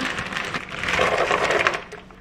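Pot of broth with tortellini at a hard, rolling boil, a dense rapid crackle of bubbling that cuts off just before the end.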